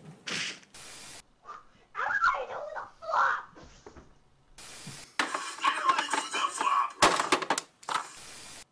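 Voices from a rapid string of short home-video clips, separated by brief bursts of even, static-like hiss where one clip cuts to the next. A cluster of sharp clicks comes about seven seconds in.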